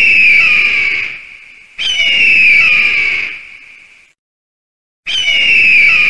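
A bird-of-prey scream sound effect, the stock eagle cry: shrill screeches that fall in pitch, each lasting about a second and a half and repeating every two to three seconds.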